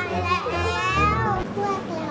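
Several children's high-pitched voices exclaiming excitedly over background music with a low bass line; the voices are loudest in the first second and a half, then drop away.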